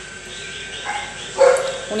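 A short animal call, once, about one and a half seconds in, over low room noise.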